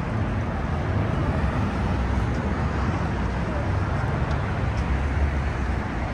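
Steady road traffic on a busy multi-lane city street: engines and tyres of passing cars make a continuous low noise.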